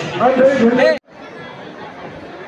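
Men's voices talking loudly close to the microphone, cut off abruptly about a second in; after that, only faint crowd chatter.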